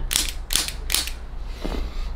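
Spring-loaded chiropractic adjusting instrument firing against the bones of the foot: about three sharp mechanical clicks in quick succession within the first second, then a softer sound near the end.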